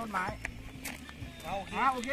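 People's voices: short, high-pitched talk or calls near the start and again about a second and a half in, with music faintly underneath.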